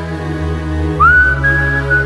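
Music with a whistled melody: long held high notes, sliding up into a new note about a second in, over a sustained low accompaniment.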